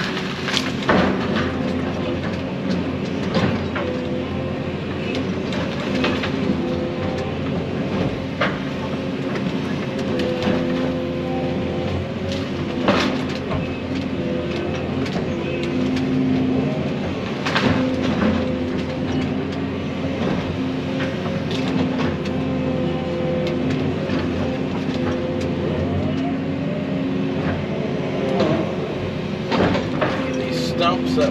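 Excavator engine and hydraulics running under load, heard from inside the cab, their pitch rising and falling as the machine works. Brush and limbs crack and clatter as they are loaded into a dump truck, with sharp cracks now and then.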